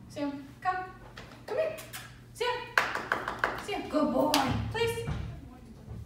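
Short one- and two-word commands called to a dog in a woman's voice, with a quick run of hand taps about three seconds in.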